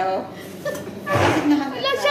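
Women's voices: lively chatter, with a louder vocal outburst a little over a second in.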